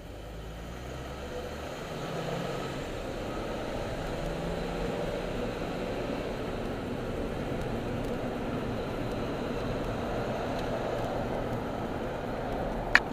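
Engine and road noise heard from inside a car's cabin as it pulls away and gathers speed. The sound grows louder over the first few seconds and then holds steady.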